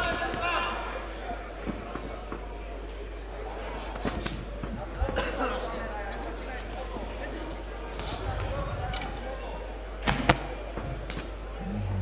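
Boxing gloves landing punches: scattered short thuds, the loudest a quick double hit about ten seconds in, over crowd voices echoing in a large hall.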